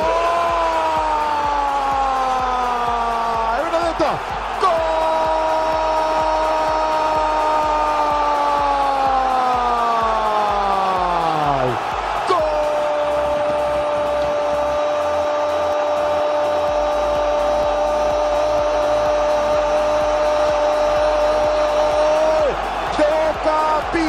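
A football commentator's drawn-out goal call, one voice held in three long breaths, each sagging in pitch as the breath runs out, over a cheering stadium crowd.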